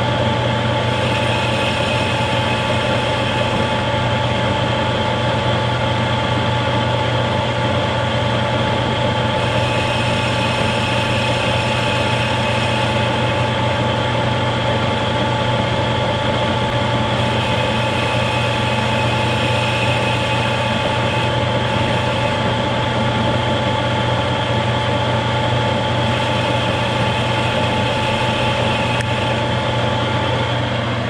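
Metal lathe running at a steady speed, its motor and drive giving a constant hum, while a cutting tool turns the 45-degree face of a new engine valve. A thin higher whine comes and goes four times.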